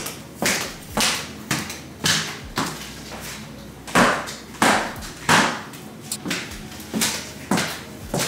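Footsteps on a hard wood-look floor, about a dozen irregular steps while walking and turning.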